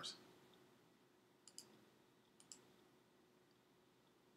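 Near silence broken by two faint double clicks, about one and a half and two and a half seconds in.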